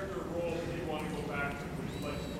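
An audience member asking a question from the floor, faint and distant compared with the miked speech.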